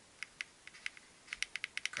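Repeated sharp clicks of a Romoss Sense 6 Plus power bank's power button being pressed: a few scattered presses, then a quick run of them in the second half. The pack does not switch on because its battery is completely flat.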